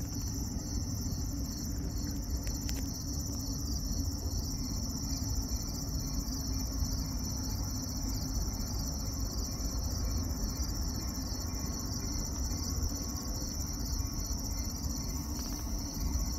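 Crickets chirping in a steady high trill over a low, even rumble.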